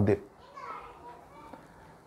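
A man's sermon speech ends at the start, followed by a pause in which faint distant voices are heard in the background.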